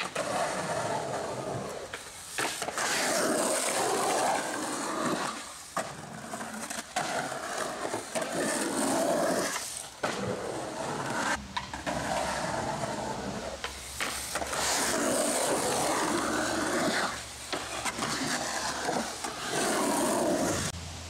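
Skateboard wheels rolling on a concrete bowl, the rolling noise swelling and fading over several passes as the board carves up and down the transitions. A few sharp clacks of the board break in between.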